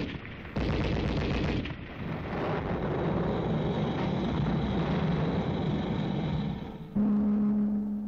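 Battle sound effects on a film soundtrack: long bursts of rapid machine-gun fire in the first two seconds, then a steady din of gunfire and explosions. Near the end a sustained music note comes in.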